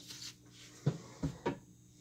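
Three light knocks and taps, about a second in, from bath bomb molds being handled and set down on a worktable.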